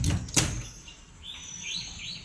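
Two sharp knocks in the first half second, then a few short, high bird chirps in the second half.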